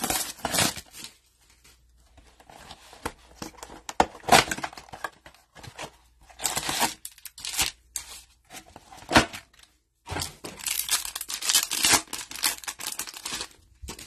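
A cardboard trading-card blaster box is torn open and its foil card packs ripped open and crinkled. It comes as a series of tearing and crinkling bursts with sharp clicks between them, the longest near the end.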